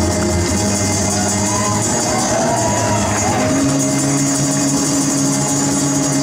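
Acoustic guitar played live, ringing chords held over steady low notes, with a change to new bass notes about three and a half seconds in.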